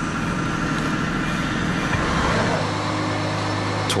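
Large engine of heavy offshore construction machinery running steadily with a deep hum. A little past halfway its note shifts and a lower tone grows stronger.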